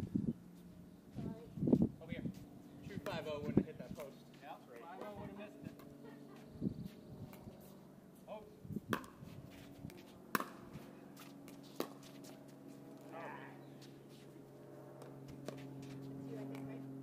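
Pickleball paddles hitting a hard plastic ball in a rally: a series of sharp pops, several about a second and a half apart. Players' voices are heard in the first few seconds, and a faint steady hum runs underneath.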